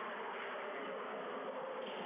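Steady, even background noise of the building's room ambience, with no distinct ball strikes standing out.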